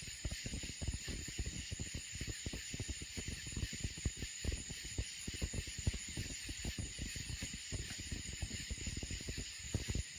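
Steady high-pitched outdoor night hiss, with dense, irregular low buffeting and knocking on a handheld microphone.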